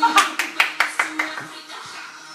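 A quick run of hand claps, about five a second, stopping about a second and a half in, over music playing in a small room.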